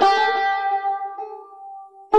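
Persian tar plucked with a sharp attack, the note ringing on and slowly fading away over about two seconds.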